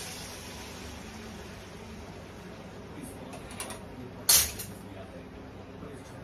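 Egg whites sizzling in hot coconut oil in a non-stick frying pan: a steady hiss that slowly eases off. A sharp clatter a little past four seconds in is the loudest sound.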